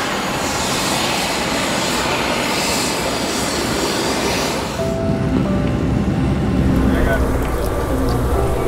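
A loud steady rushing noise for about five seconds, then the low rumble of a subway train running, with a few steady tones over it.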